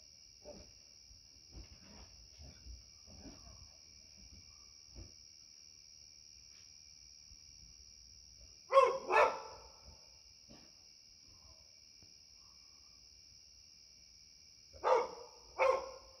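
Labrador retriever barking: two quick barks about nine seconds in, then two more near the end.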